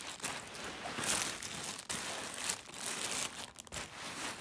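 A garment tote bag rustling and crinkling as it is handled, loudest about a second in.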